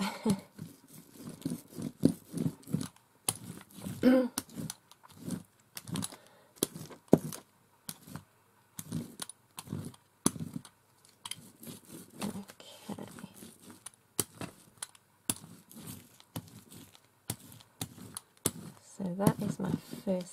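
A small hand brayer rolled back and forth over wet peach paint on a paper page, giving irregular sticky ticks and clicks with each pass. A short laugh comes at the start.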